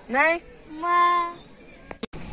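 A boy's voice: a quick rising exclamation, then one long held note, half sung, about a second in.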